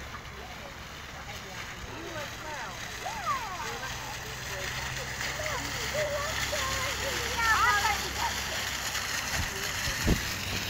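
Small fountain jet splashing onto rocks, a steady hiss of falling water that grows louder in the second half, with children's voices chattering over it.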